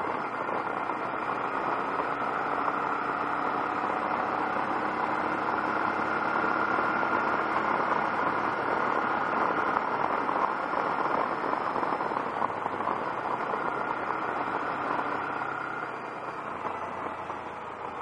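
Honda NT700V motorcycle riding at road speed: steady wind noise over the mic with the V-twin engine running underneath. It grows a little quieter near the end.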